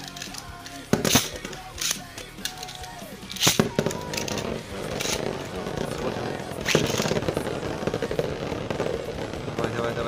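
Beyblade spinning tops launched into a plastic stadium: sharp snaps of the launcher and of the tops landing, loudest about three and a half seconds in and again about seven seconds in. After the first launch, a steady whirring rattle of a top spinning on the stadium floor, joined by the second top.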